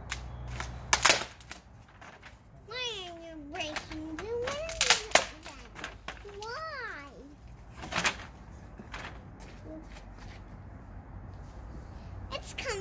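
Scattered sharp wooden cracks and knocks from a freshly lit garden bonfire of wood planks and egg trays, with planks being handled beside it; the loudest come about a second in and about five seconds in. A child's high voice calls out twice in long sliding tones without words.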